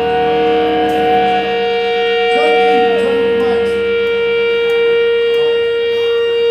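Live ska punk band holding long sustained notes, horns and electric guitar ringing out together; the higher held note slides down and breaks off about halfway through while the lower one stays steady.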